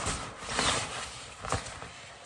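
Laminated polyester fabric crinkling and rustling as it is handled and unfolded, with a sharp crackle about a second and a half in.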